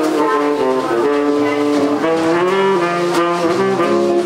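Small jazz combo playing live: tenor saxophone carrying the melody in long held notes over archtop guitar, upright bass and drum kit with cymbals.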